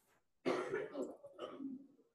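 A person clearing their throat: a sudden loud rasp about half a second in, going on in a few surges for over a second.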